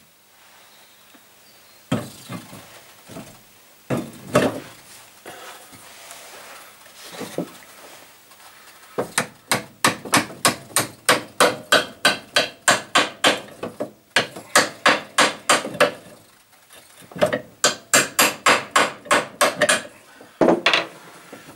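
Copper hammer tapping the motor's mounting pin through the pillar drill's head. After a few single knocks, it goes in a quick run of light, rapid strikes, about four or five a second, then pauses and starts a second run near the end.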